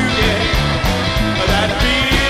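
Live rockabilly band playing: an upright double bass plucked in a stepping line, with electric guitar, a steady drum beat and a man singing.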